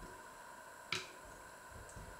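A single sharp click about a second in, from plums being pitted by hand with a small knife over an enamel bowl and a steel colander, over a faint steady whine.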